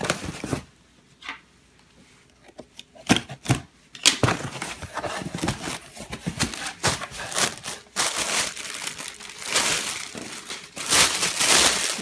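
Plastic air-pillow packing and plastic wrap crinkling as a cardboard shipping box is opened and its contents handled. After a short quiet spell near the start come two sharp knocks, then almost continuous crinkling and rustling with many small clicks, loudest near the end.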